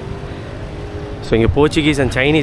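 A steady low background hum with a faint steady tone under it, then a person starts speaking about a second and a half in.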